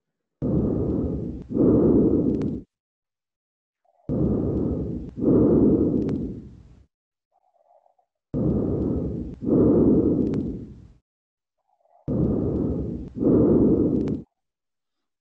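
Lung breath sounds heard through a stethoscope on the back: four slow breaths, each an in-breath followed directly by an out-breath, with silent pauses between. The breath sounds at the lung bases are clear with no crackles, the pulmonary congestion of mitral stenosis resolved after balloon valvuloplasty.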